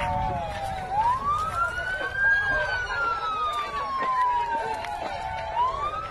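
An emergency vehicle's siren wailing: a quick rise in pitch about a second in, a long slow fall, then another rise near the end. People's voices are heard underneath.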